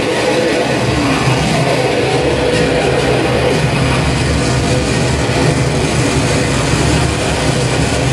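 Harsh noise music played live through a PA: a loud, dense wall of low rumble and hiss with no beat or melody, steady in level.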